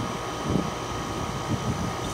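Old Ducane 5-ton R22 rooftop heat pump running: a steady low hum with a rush of air.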